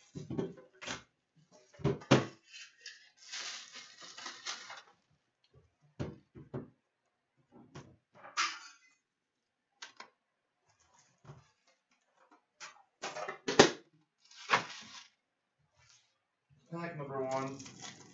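A metal trading-card tin and its foil card packs being handled: scattered clicks and knocks, a few short crinkling bursts, and a louder knock about two-thirds of the way through.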